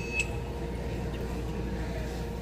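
Handheld barcode scanner beeping twice in quick succession as it reads the labels on laptop boxes: two short high beeps a quarter second apart, the second near the start. A steady low hum of store background noise runs underneath.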